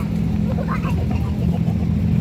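Motor vehicle engine running on the street, a steady low drone, with faint voices over it.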